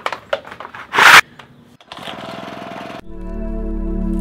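A pull on the starter cord of a Honda four-stroke hedge trimmer: a few clicks, then one loud rasping pull about a second in, followed by about a second of steady noise. From about three seconds in, background music with a steady drone takes over.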